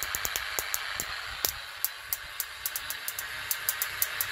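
High-voltage arc from a high-frequency stimulator sparking across a gap and into a gas discharge tube: a steady hiss broken by irregular sharp crackles, the strongest about a second and a half in.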